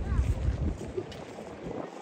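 Wind buffeting the phone's microphone as a low rumble, strongest in the first second and then easing, over faint distant crowd chatter.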